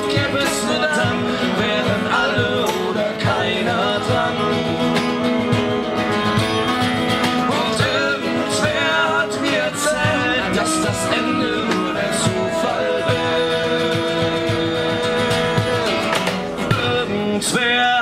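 A live acoustic trio playing a song at a steady level: strummed acoustic guitar, cello and cajón keep a regular beat together.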